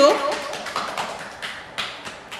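A string of light, irregular taps close to the microphone, following the tail end of a spoken word.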